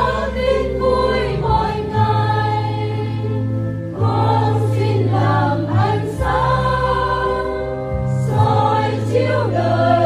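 A choir sings a Vietnamese Catholic hymn about going out to proclaim the Good News. Held low accompaniment notes change about every two seconds beneath the voices.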